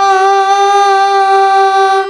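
A girl's voice holding one long, steady sung note in an Odissi song, over a harmonium's sustained reed chord.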